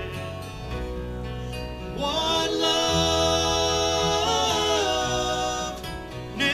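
Live country-gospel band playing, with acoustic guitar, electric guitar and bass guitar; about two seconds in, men's voices come in singing long held notes, breaking off just before the end.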